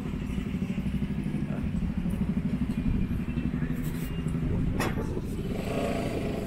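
A motor vehicle engine running steadily close by, a low, evenly pulsing rumble, with a sharp knock about five seconds in.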